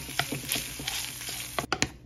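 Ground beef sizzling in a nonstick frying pan while a wooden spatula stirs it, a steady hiss dotted with small clicks. The sizzle stops abruptly near the end, followed by a couple of sharp clicks.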